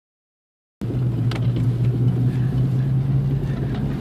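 Vehicle engine and road noise heard from inside the cabin while driving: a steady low hum over a rumble, cutting in abruptly a little under a second in.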